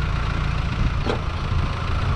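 Mahindra Thar's diesel engine running steadily at low revs, with a faint click about a second in.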